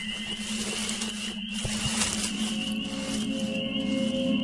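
Dark ambient background music: a low steady drone with a high, wavering tone above it and a soft hiss, and another held note joining near the end.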